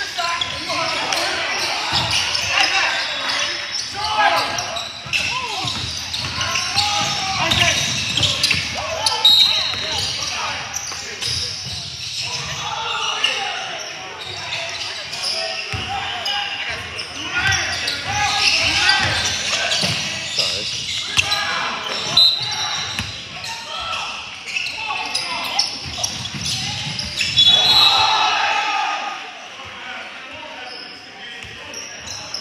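Indoor basketball game: a ball bouncing on a hardwood gym floor amid players' and onlookers' voices, echoing in a large hall, with a few short high squeaks.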